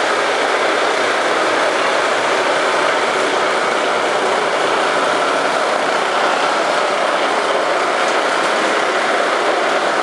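Automatic wall plastering machine running on its mast: a steady, even mechanical noise from its motors and carriage, with no change in pace.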